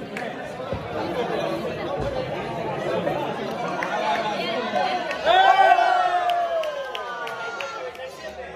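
Chatter of a small crowd of people talking over one another in the street, with one loud drawn-out shout, falling in pitch, about five seconds in.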